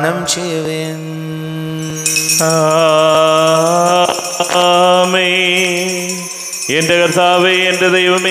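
A man's voice chanting a liturgical melody in long held, wavering notes over a steady low tone, during the raising of the chalice at Mass. From about two seconds in, small bells jingle along with it.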